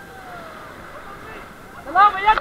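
Steady rushing noise of a whitewater rapid around an inflatable raft, with faint voices calling over it.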